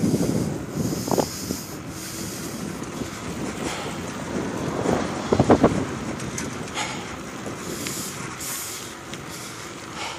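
Wind buffeting the microphone over the rolling noise of a moving bicycle, with a brief rattle about five and a half seconds in.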